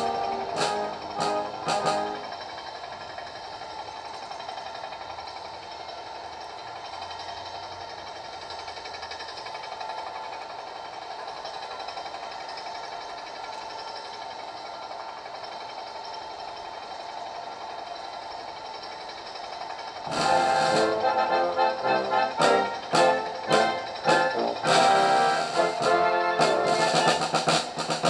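Ceremonial band music: a softer, sustained passage, then louder playing with regular sharp strokes from about twenty seconds in.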